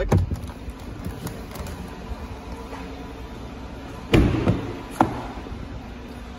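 Pickup truck doors: a heavy door thump about four seconds in, then a sharp latch click about a second later.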